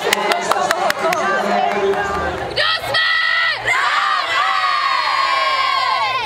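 A crowd of young people cheering and shouting, with sharp claps in the first two seconds. About two and a half seconds in, it rises into a long, loud, high-pitched group scream that lasts to the end.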